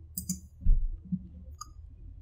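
Computer mouse clicks: two in quick succession near the start and one more about a second and a half in. Between them, a little before halfway, comes a louder, low thump.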